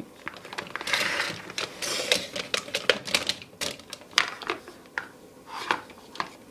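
Hard plastic toys being handled and moved about, clicking and knocking irregularly, with two short scraping rustles about one and two seconds in.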